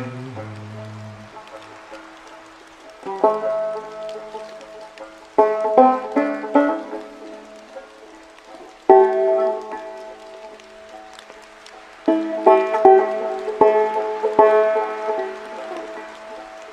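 Five-string banjo played slowly: sparse phrases of plucked notes and chords that ring out and fade, with pauses between them, the first starting about three seconds in. A faint steady hiss of rain lies underneath.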